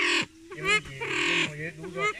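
Male silver pheasant calling in a series of short pitched calls, with a longer call of about half a second near the middle.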